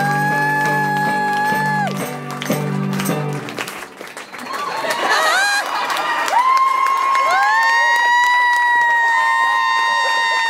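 Live band holding a final chord with voices singing over it; the chord cuts off about three and a half seconds in. The audience then cheers and whoops with long high yells, and clapping starts.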